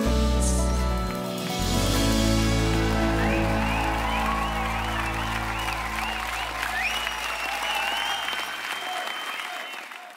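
The band's last chord on acoustic guitars and fiddle rings out and fades as a studio audience breaks into applause, with cheering and wavering whistles through the middle. The applause thins near the end and then cuts off.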